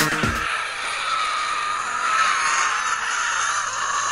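Electronic dance music with a beat breaks off about half a second in. It gives way to a steady, airy, hissing sound effect with faint wavering tones and no bass, the sound bed of an animated title sequence.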